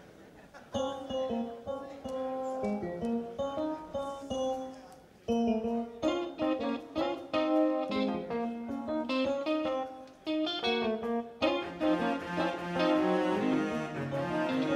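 Keyboard opening a live progressive rock song, starting about a second in with quick, separate notes and chords, then getting louder and busier about five seconds in and again near the end.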